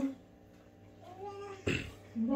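An eight-month-old baby making a short, soft cooing vocal sound, followed near the end by a brief sharp noise.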